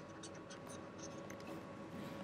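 Faint scratching and light tapping of a stylus writing by hand on a digital writing tablet.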